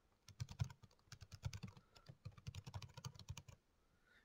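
Faint computer keyboard typing: a quick, irregular run of keystrokes as a short line of text is typed, stopping about half a second before the end.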